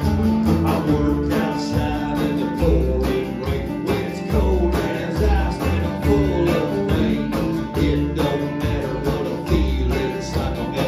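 Live country band playing an instrumental passage between verses: strummed acoustic guitar and banjo over upright bass and a steady drum beat.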